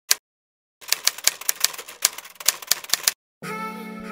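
Typewriter key clacks typing out a title: one clack, then a fast, irregular run of clacks lasting about two seconds. Near the end, music comes in with a sustained chord.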